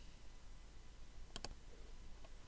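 Two quick, sharp clicks of a computer mouse button, close together about one and a half seconds in, over quiet room tone.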